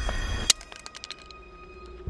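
A single sharp crack about half a second in, at which the low rumble cuts off suddenly, followed by a few faint clicks.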